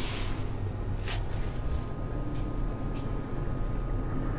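Steady low rumble and faint hum inside an enclosed Ferris wheel gondola as the wheel turns, with two brief hissy rustles in the first second and a half.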